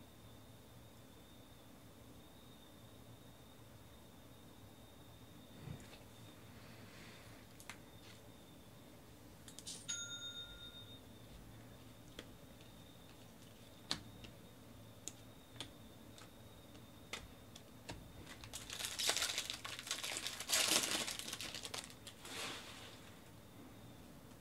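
Foil wrapper of a baseball-card pack crinkling and tearing as it is opened and the cards are handled, loudest for a few seconds near the end. A brief bell-like chime about ten seconds in, and a few light clicks of cards.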